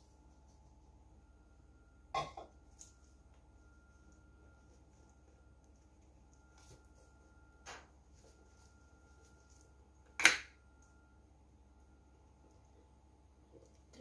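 Kitchen containers handled and set down on the counter in a quiet room: a few short sharp knocks and clatters, the loudest about ten seconds in.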